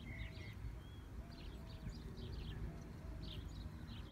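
Faint birds chirping outdoors: scattered short high chirps, with short calls in pairs recurring every second or so, over a low background rumble.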